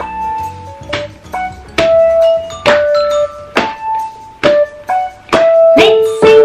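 Keyboard music playing a simple children's melody in single held notes, with a sharp knock on each beat, a little under one a second.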